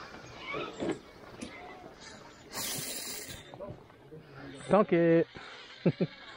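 A man's wordless vocal sound, one short held tone about five seconds in that is the loudest thing, then a brief second one near the end, with a short hiss about two and a half seconds in.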